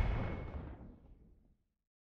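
The fading tail of a deep boom from a logo-reveal sound effect, dying away steadily and gone about a second and a half in.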